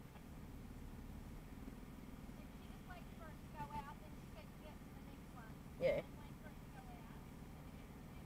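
Faint, steady low hum of a 4WD's engine idling, heard from inside the stationary vehicle. Quiet voices murmur in the background, and a short spoken sound about six seconds in is the loudest thing.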